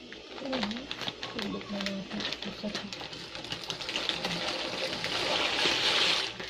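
A plastic packet of dry macaroni crinkling as it is handled, then the pasta pouring out of it into a pot of water, a rushing hiss that builds and is loudest near the end.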